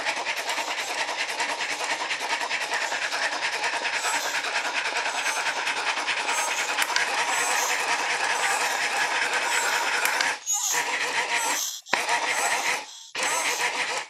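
Tinny, crackly audio from an earbud pressed against the microphone, playing the built-in sound output of an automatic male masturbator. The sound is dense and rapidly pulsing, and near the end it drops out briefly several times as the modes are switched.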